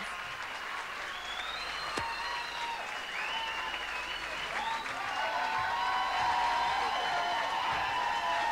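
Audience applauding and cheering for a winner just announced on stage.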